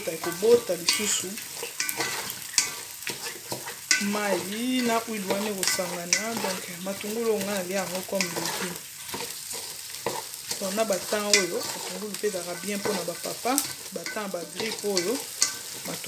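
A wooden spoon stirs and scrapes sliced onions frying in oil in a pot, with a steady sizzle and repeated knocks of the spoon against the pot. A wavering pitched sound runs under much of it.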